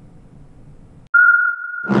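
Faint room tone, then a steady high-pitched electronic tone that starts abruptly about a second in and holds: the opening of an animated logo sting. Near the end a voice begins to say "yum".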